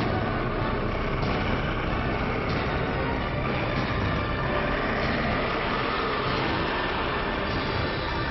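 A loud, dense, steady rushing noise filling the whole range, with music faintly underneath.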